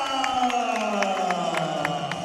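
A ring announcer's long, drawn-out call during a fighter's introduction, one held voice sliding slowly down in pitch. Underneath it are crowd noise and sharp clicks about four times a second.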